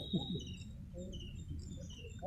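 Outdoor field sound: repeated short, high chirps and a thin steady high tone from small creatures, over a low murmur of a crowd's voices, with one voice briefly heard just after the start.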